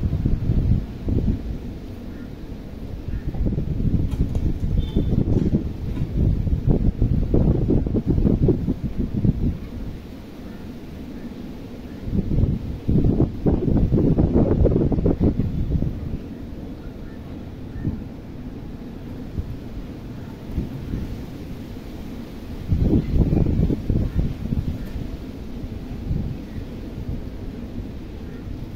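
Wind buffeting the microphone: a low rumble that comes in several gusts, swelling and fading, the strongest about halfway through.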